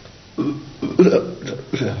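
A boy making short throaty vocal sounds in three bursts while a liquid is given to him from a small bottle.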